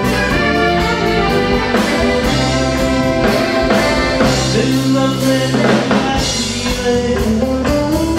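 A live band playing a Ukrainian song: saxophone and electric guitars over keyboard and bass, with a drum kit keeping a steady beat.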